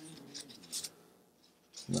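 A couple of faint, brief scratchy sounds as a watch crystal is wiped clean by hand, then near silence.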